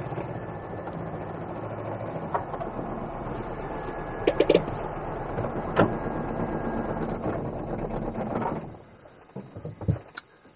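Aixam Mega Multitruck's small Kubota two-cylinder diesel running steadily, heard from inside the cab as the van rolls slowly, with a few short clicks and rattles. The engine is switched off near the end, leaving a few small clicks.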